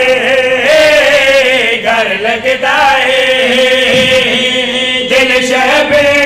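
A group of men chanting a devotional refrain together in a Shia majlis recitation, with long held, wavering notes and no pauses.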